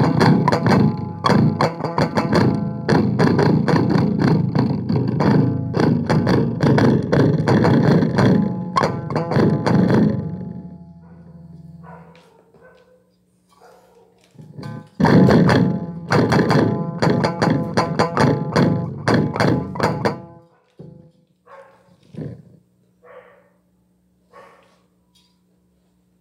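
Stratocaster-style electric guitar played very fast, a dense run of rapidly picked notes that stops about ten seconds in. After a pause with a steady low hum, a second burst of fast playing runs for about five seconds, then a few scattered notes.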